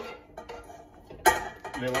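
A metal utensil scraping and tapping in a frying pan held over a stainless steel stockpot as the fried beef rib is moved into the pot: a few light clicks, then one sharp clank about a second and a quarter in.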